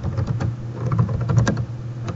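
Computer keyboard being typed on: a quick, uneven run of key clicks as a short phrase is entered.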